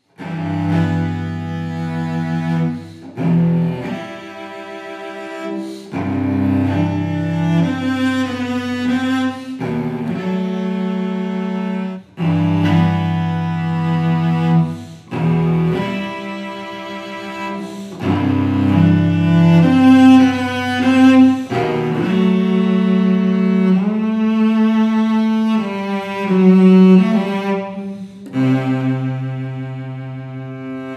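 Solo Giovanni Viotti GV-790 professional cello, played with the bow. The same short melodic phrase is played several times over, once with the cello's original Belgian-style bridge and once with a luthier-made French-style bridge, so the two bridges' tone can be compared.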